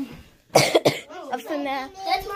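A person coughs twice in quick succession, sharp and loud, about half a second in; speech follows.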